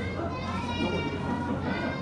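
A high-pitched voice calling out in long, drawn-out phrases over a steady low hum.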